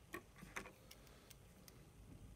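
Near silence with a few faint ticks, about two a second.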